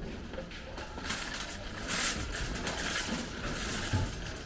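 Indistinct background noise at a supermarket entrance: a steady hiss with a low rumble and no clear tones, swelling slightly in the middle.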